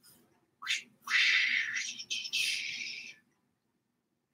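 Felt-tip marker squeaking and scratching on flip-chart paper while writing: a short rising stroke about a second in, then about two seconds of continuous writing broken by two brief pauses between strokes.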